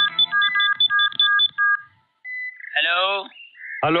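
Mobile phone keypad beeps as a number is dialled: a rapid run of about eight short electronic tones in under two seconds, followed by a brief steady tone and then a man's voice answering "Hello?" near the end.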